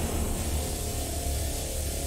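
Horror-film soundtrack playing loud, dense dramatic music over a deep, steady low rumble.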